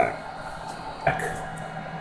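Steady low hum of running bench test equipment, with a short click about a second in, after which the hum changes.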